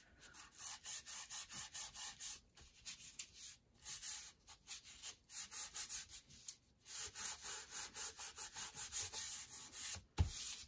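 A plastic ruler rubbed over paper in quick, repeated scraping strokes, several a second, with short pauses between runs.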